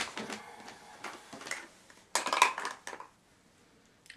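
Small hard makeup items clicking and clattering together as they are rummaged through by hand. There is a sharp click at the start and a busier burst of clatter about two seconds in, then it goes quiet.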